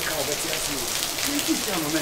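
Steady hiss of heavy rain falling, with a voice singing a slow, drawn-out line over it.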